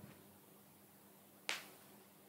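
Near silence, broken by a single short, sharp click about one and a half seconds in.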